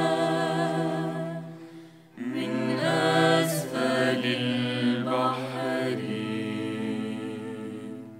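Two women singing a slow Arabic melody together in long held phrases, over a ney flute and a bowed cello holding low notes. The music fades out about two seconds in, a new phrase starts right after, and it fades again near the end.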